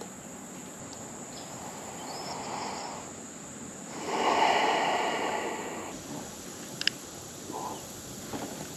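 Quiet outdoor ambience on a river, with a soft rushing swell about four seconds in that lasts a couple of seconds, and a small click near the end.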